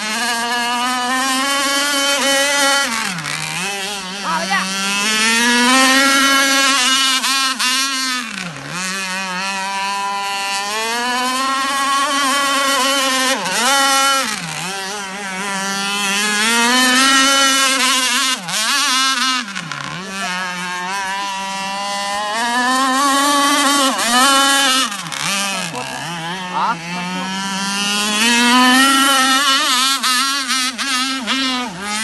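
RC powerboat driven by a converted two-stroke chainsaw engine, running at high revs. Several times, roughly every five seconds, the engine's pitch drops sharply and then climbs straight back up.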